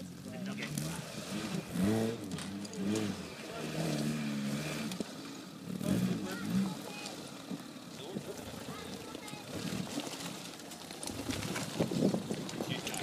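Small off-road 4x4 engine revving up and down in uneven spurts as it crawls up a rocky slope, with people talking over it.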